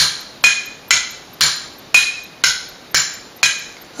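A stick tapping mugs in a steady beat of about two strokes a second, each stroke ringing briefly, with three different pitches cycling round. This is the right-hand part of a five-against-four polyrhythm played alone: four beats cycled over three sounds.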